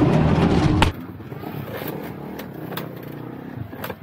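Loud rustling and knocking that stops abruptly about a second in, followed by a quieter stretch with a faint motorcycle engine running and scattered clicks.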